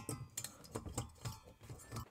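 A few light, irregular clicks and taps of a screwdriver against the metal heat sink and its screws.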